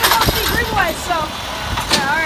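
Peterbilt garbage truck's diesel engine running while its Autoreach automated side-loader arm works, with a sharp knock just after the start and another near the end, and repeated short squeaks.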